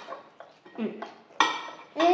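Metal cutlery clinking against plates and bowls at the table, with a sharp clink about one and a half seconds in.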